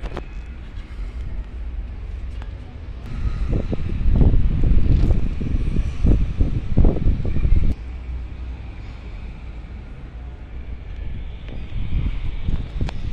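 Wind buffeting the microphone with a low rumble, swelling into stronger gusts for a few seconds in the middle, then easing.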